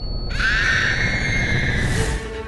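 A woman's high, wavering wail that rises in pitch and then holds, over a low rumble. A thin high ringing tone cuts off just before the wail starts.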